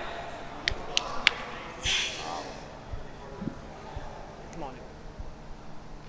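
Faint background of distant voices, with three sharp clicks about a second in and a short hiss about two seconds in.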